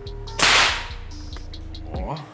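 A single sharp shot about half a second in, fading quickly: an air-rifle pellet fired at the primer of a loose 7.62 mm rifle cartridge that is not in a barrel.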